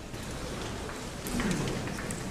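Steady hiss of a hall's room noise with light paper rustling and small handling clicks, growing louder in the second half.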